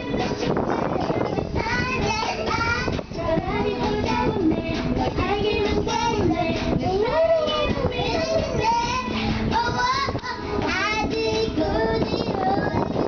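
A young girl singing a song, over music playing along with her.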